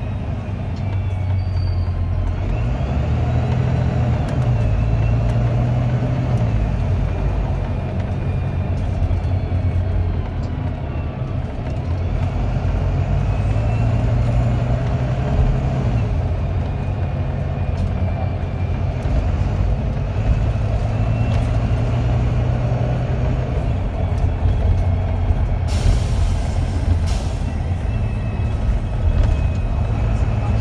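Volvo B9TL double-decker bus's six-cylinder diesel engine heard from inside on the upper deck, being worked hard as the bus pulls away and changes gear, its note rising and falling with a thin whine gliding above it. Near the end, a short hiss of released air from the brakes.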